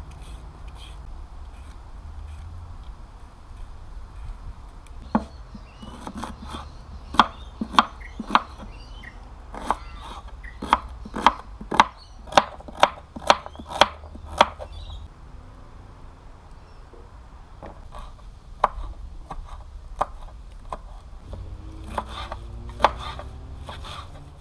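Kitchen knife chopping vegetables on a board: sharp separate taps, a quick steady run of them in the middle, then only a few scattered cuts toward the end.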